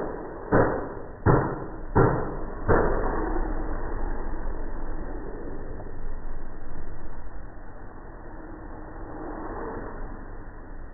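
Four heavy knocks about 0.7 s apart from a Volkswagen's front end as it is pushed down and let rebound by hand, testing the newly fitted shock absorbers. After that comes a steadier, duller noise that fades.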